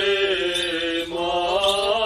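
Armenian Apostolic requiem chant sung by a single male cleric, holding long notes with small wavering ornaments; the note changes about a second in, after a brief breath.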